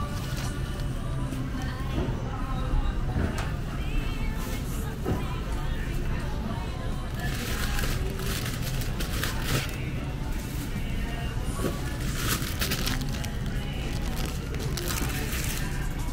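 Music playing in the background, with plastic produce bags crinkling in short bursts as they are handled, mostly in the second half.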